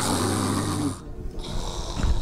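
Dromedary camel grumbling with its mouth open, a low rattling growl that stops about a second in. The camel is agitated, not calmed by the handler's soothing sounds.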